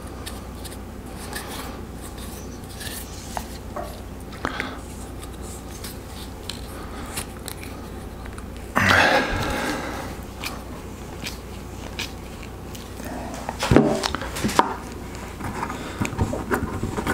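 Hands wrapping Teflon tape onto a small plastic pipe fitting: faint rubbing and small clicks, with a louder rasp lasting about a second around nine seconds in and a few sharp knocks a little before the end.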